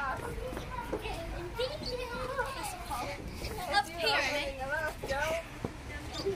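Young children's voices babbling and calling out without clear words as they play, with a higher-pitched call about four seconds in.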